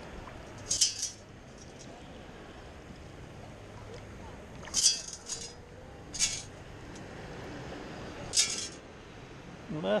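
A few brief, sharp, high clinks, about four, over faint water noise: a perforated stainless steel sand scoop being knocked and sloshed in shallow water.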